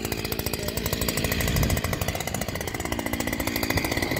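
Two-stroke petrol engine of a Messer JH-70 post driver running as it warms up after a choked cold start, with a fast, even rattle of firing pulses; its pitch sags and recovers once in the middle.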